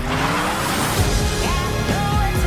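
Trailer music with a car engine revving over it, its pitch rising through the first second.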